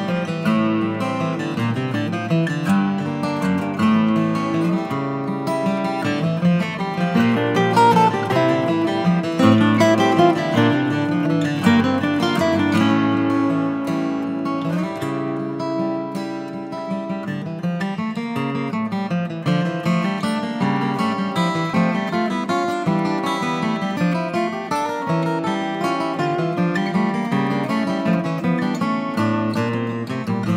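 Background music played on acoustic guitar, plucked and strummed, running without a break.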